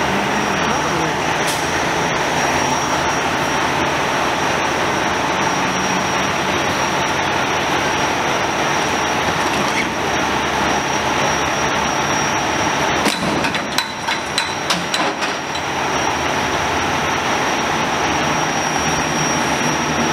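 Steady din of idling emergency-vehicle engines and traffic, with a faint high steady whine. A quick string of sharp knocks comes about thirteen to fifteen seconds in.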